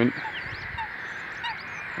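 Wild birds calling faintly at a misty wetland pool: a few short, high chirps and some soft lower calls over a steady background hiss.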